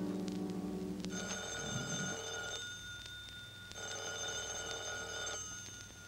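Telephone bell sound effect ringing twice, each ring about a second and a half long with a short gap between, as an orchestral brass chord dies away at the start.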